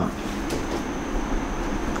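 A steady low rumble with hiss, the room's background noise heard in a pause between speech, with a faint click about half a second in.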